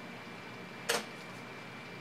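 A single short, sharp click about a second in, as the presentation slide is advanced, over faint steady room tone with a thin high hum.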